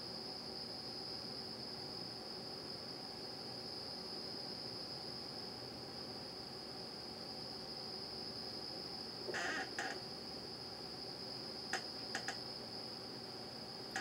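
A steady, faint, high-pitched whine or trill sounds on one unchanging note. A brief soft sound comes about nine and a half seconds in, and a few faint clicks follow near twelve seconds.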